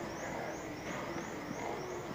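Background noise of a large store, steady and fairly quiet, with a faint high chirp repeating about four times a second.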